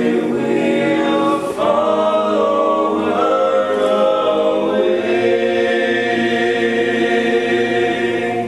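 A cappella choir singing sustained chords in a church, with a few chord changes and then one long chord held through the second half.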